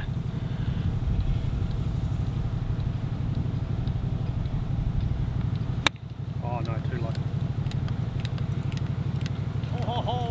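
A 56-degree sand wedge strikes a golf ball once, a single sharp click about six seconds in, for a low pitch shot. Under it, a small engine drones steadily with a fast pulse, from greenkeeping machinery working on the course.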